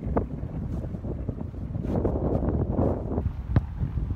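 Wind buffeting the microphone, a steady low rumble, broken near the end by one sharp thud of a football being kicked.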